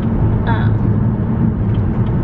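Steady road and engine rumble heard inside a car's cabin while it drives at highway speed, with a brief vocal sound about half a second in.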